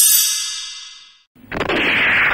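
A bright metallic chime, a logo sting, rings out and fades away over about a second and a half. Music comes in about one and a half seconds in.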